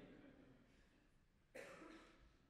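Near silence, broken about one and a half seconds in by a single short cough.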